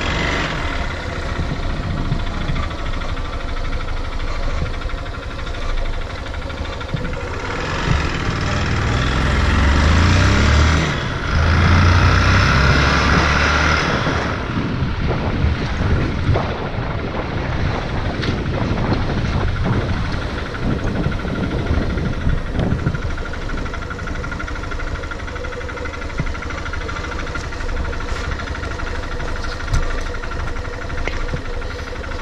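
A vehicle engine running steadily. It grows louder for several seconds near the middle, then settles back.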